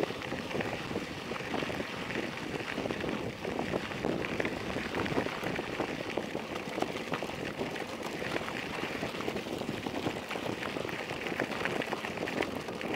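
Bicycle tyres rolling over a loose gravel road: a continuous crunching and crackling with many small clicks as the bike rattles over the stones.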